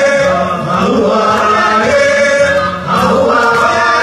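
Live group singing in a chanting style over a gamelan and drum ensemble, Zimbabwean Jerusarema/Mbende song blended with Indonesian gamelan. Held sung notes change pitch about once a second, with light percussion strokes underneath.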